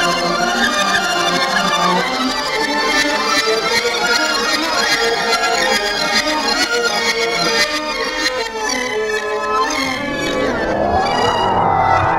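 A recorded music sample played through the Manipuller, a string-pull sensor sampler, running forward and backward at changing speed. About ten seconds in, its pitch sweeps steeply upward as the playback speeds up.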